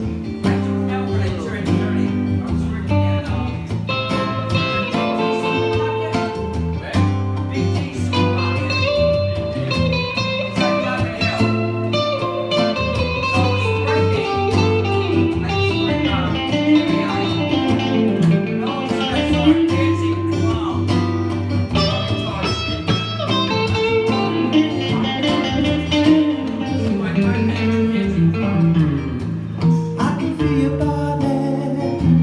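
An acoustic guitar and an electric guitar play a slow blues instrumental together: steady chords and low notes underneath, and a lead line full of bent notes that glide up and down.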